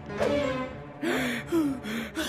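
A cartoon cat's frightened gasp, followed by quick, breathy panting gasps in the second half, over background music.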